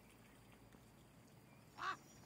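Near-silent room tone, then one short pitched animal call near the end.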